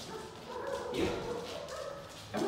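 Small dachshund-mix dog whining, one drawn-out high note lasting over a second.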